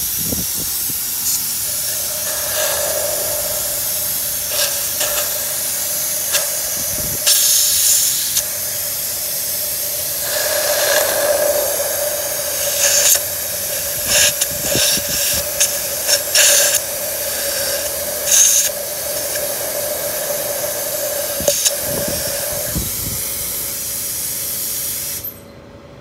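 Vacuum suction through a thin nozzle drawing loosened carbon and cleaning foam out of an engine's intake port. It makes a loud steady hissing rush with a steady whistle-like tone through most of it and several brief louder surges. It cuts off suddenly shortly before the end.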